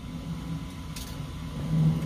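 A vehicle engine running with a steady low hum that swells near the end, and a single sharp click about a second in.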